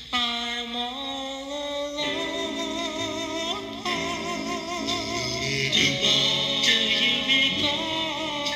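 Vocal group ballad played from a 45 rpm single: several voices hold sustained harmony notes with vibrato over a slow bass line, the chord shifting every second or two.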